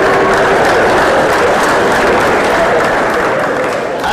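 Live audience applauding and laughing: a dense, steady wash of clapping and crowd voices that eases slightly near the end.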